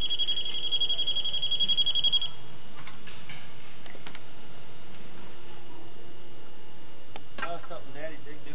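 Sound from an old 8mm camcorder tape recorded outdoors: steady tape hiss with a high, rapidly pulsing insect trill that stops about two seconds in. A sharp knock comes near the end, followed by a voice.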